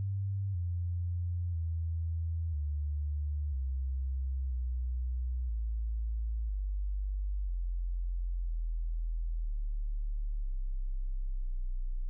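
A pure, steady low electronic tone that comes in abruptly and falls in pitch in small steps over the first several seconds, then holds as a deep hum.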